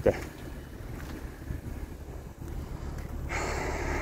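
Wind rumbling on a handheld microphone, with a short breathy hiss near the end.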